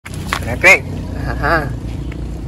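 A person speaks a short Vietnamese word and a brief second sound, over a steady low hum in the background.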